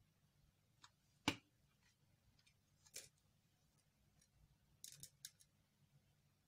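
Near silence broken by a few faint sharp clicks from hands working a metal crochet hook through yarn, the loudest a little over a second in and a short cluster of them around five seconds in.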